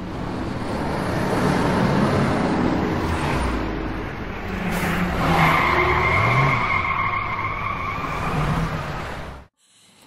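Car sound effect for a logo sting: engine and rushing tyre noise, with a high tyre squeal through the second half as the car skids, cutting off abruptly just before the end.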